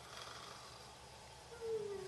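Quiet room tone with a faint rustle at the start, then a woman's voice making a falling, wordless hum near the end.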